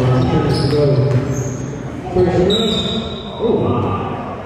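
A basketball dribbled on a hardwood gym floor, echoing in a large gym, with voices in the background and a brief high squeak a little past the middle.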